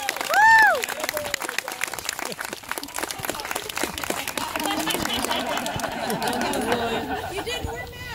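Wedding guests clapping and cheering, with a short high whoop about half a second in. Talking and laughter join the clapping from about halfway.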